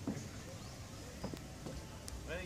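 Quiet open-air background with a low steady rumble, faint distant voices and a few soft clicks.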